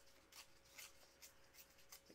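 Near silence with a few faint, short scratchy rips as black cardstock is torn by hand along its edge to give it a rough, deckled look.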